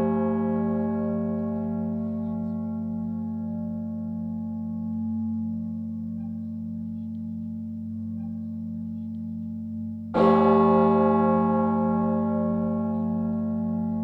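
A deep church bell rings with many overtones. The ringing of an earlier stroke dies away slowly, and the bell is struck again about ten seconds in.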